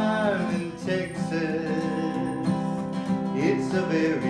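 Acoustic guitar strummed in a steady rhythm, with a man's voice singing short bending notes at the start and again about three and a half seconds in.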